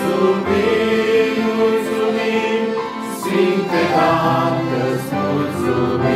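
A group singing a Christian hymn together, accompanied by a piano accordion and an electronic keyboard.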